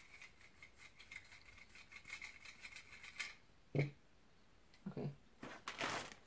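Faint handling noises of a small plastic toy, then a paper bag rustling near the end as a hand reaches into it.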